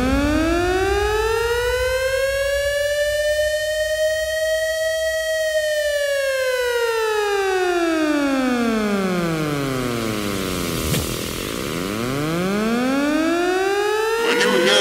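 Air-raid siren rising in pitch to a high wail, holding it, then winding down by about ten seconds in and starting to rise again near the end, over a low rumble.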